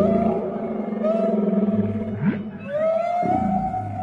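Whale calls: long moaning tones that slide slowly down and up in pitch, with a quick upward sweep about two seconds in and another near the end.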